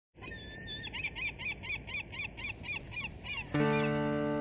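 A bird calling in a rapid run of repeated chirps, about four a second, over a faint outdoor hiss; about three and a half seconds in, an acoustic guitar chord is struck and rings on.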